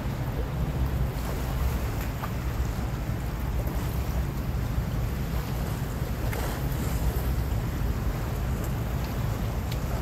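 Wind buffeting the phone's microphone as a steady low rumble, over the wash of choppy sea water.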